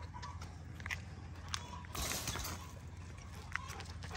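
A Rottweiler moving about at a wire panel fence: faint scattered clicks and scuffs, with a short rushing breath or rustle about two seconds in.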